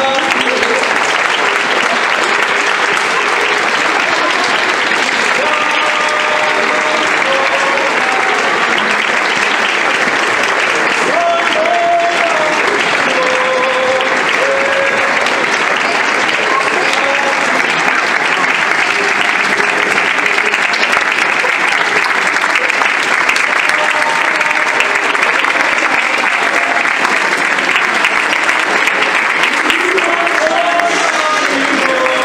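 An audience applauding steadily, with scattered voices and calls over the clapping.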